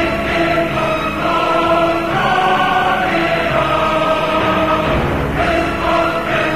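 Music from the mix's opening: held choir-like voices over sustained low notes, the chord shifting every second or so.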